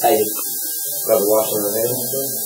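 A man's voice making a short sound at the start, then a drawn-out vocalisation from about a second in, without clear words, over a steady hiss and hum in the recording.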